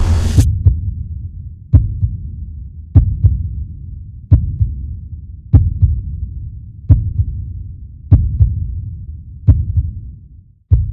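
Heartbeat sound effect: a slow double thump, repeated seven times about every 1.3 seconds, over a low rumbling drone. A hissing rush cuts off just after the start.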